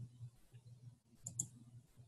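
A couple of faint computer mouse clicks about a second and a half in, advancing the presentation slide, over faint low background noise that comes and goes.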